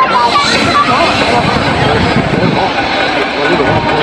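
People's voices talking over a steady, loud background noise.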